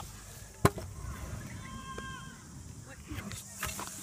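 A single sharp knock about half a second in, then a few lighter clicks near the end. A faint voice calls briefly in between.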